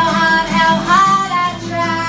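A woman singing live with her own acoustic guitar accompaniment; about a second in her voice slides up into a higher held note.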